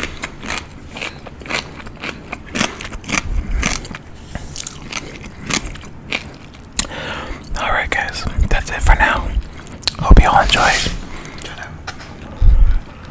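Close-miked chewing of a mouthful of seaweed salad: a quick run of wet mouth clicks and smacks. A short stretch of low voice comes in during the second half.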